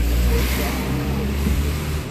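A vehicle engine running steadily: a low, even hum with a noisy wash above it.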